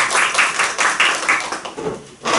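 A small group of people clapping, in a room that rings a little; the clapping thins out and dies away near the end.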